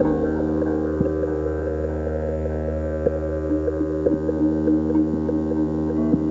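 Ambient electronic music from a live synthesizer rig: a steady low drone with several held tones stacked above it, and a few short percussive notes dropping in about once a second.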